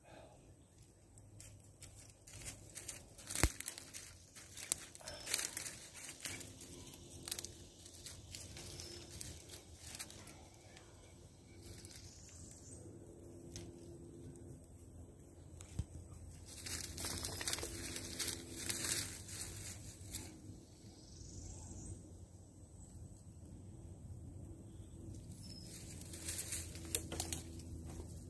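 Axial SCX24 Gladiator micro RC crawler on portal axles creeping over a tree trunk, its small electric drivetrain running faintly under a scatter of crackles and clicks.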